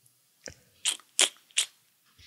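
Four short, sharp clicks close to the microphone, about a third of a second apart, with near quiet between them.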